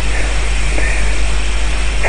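Steady, loud hiss with a low hum underneath, unchanging throughout: the recording's own background noise, with no voice.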